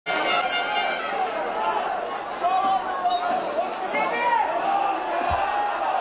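Thin stadium crowd noise from sparsely filled stands: a steady murmur with scattered voices calling out.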